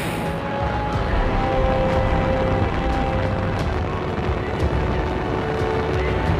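Soyuz rocket engines firing at liftoff: a steady, deep rumble of exhaust noise, with faint background music held over it.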